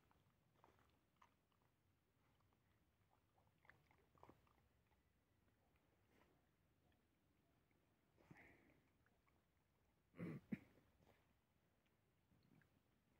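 Near silence with faint sounds of dogs chewing and eating food from a tray, soft scattered clicks, and two sharp knocks close together about ten seconds in.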